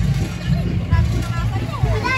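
Motorcycle-and-sidecar tricycle running at low speed as it rolls close by, a steady low engine rumble, with people's voices over it.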